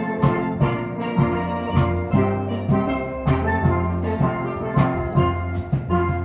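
Steel pan ensemble playing: the pans ring out melody and chords over deep bass pan notes, driven by a steady beat of percussion hits.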